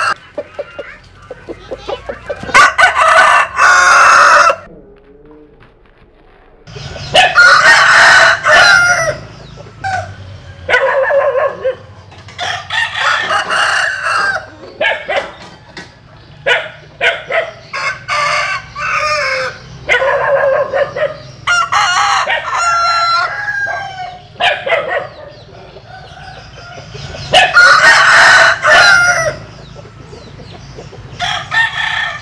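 Gamecock roosters crowing again and again, each crow a long call of a second or two, several seconds apart, with shorter clucks and calls between the crows.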